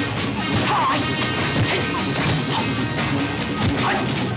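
Kung fu film title music with a run of sharp hit sound effects, several strikes a second, dubbed over the fighter's moves.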